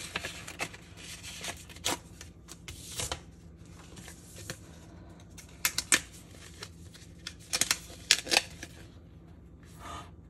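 Hands unfolding a folded paper envelope: paper rustling and crinkling, with scattered sharp crisp snaps, bunched together about six seconds in and again around eight seconds.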